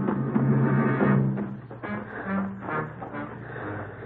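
Music: a run of held notes, loud for the first second and a half, then softer and lower for the rest.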